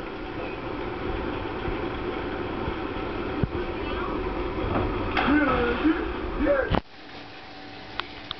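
Steady rush of water running, with voices calling out about five seconds in; the rush stops abruptly near the end.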